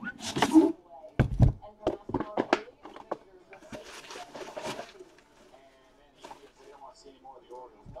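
Aluminium briefcase being handled on a table: a scrape as it is slid, then a quick run of knocks and thuds about a second in as it is set down and turned, and another sliding scrape around four seconds in.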